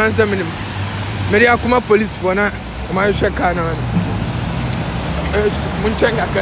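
A man speaking in short phrases over the steady low rumble of city street traffic.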